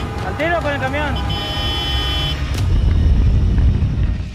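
Busy road traffic rumbling, with a vehicle horn sounding for about a second after a man's shouted warning about a bus; the rumble grows louder in the second half.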